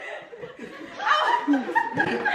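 A group of people laughing, with some talk mixed in, getting louder about a second in.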